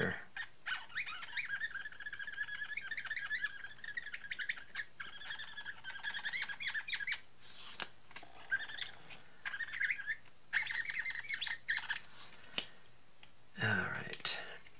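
Marker tip squeaking on glossy cardstock as it is worked in quick short colouring strokes, coming in runs of rapid squeaks with brief pauses between them.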